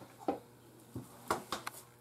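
Hands scooping stuffing out of a bowl and pressing it into a disposable aluminium foil pan, giving a handful of quiet, short knocks and crinkles from the pan and bowl.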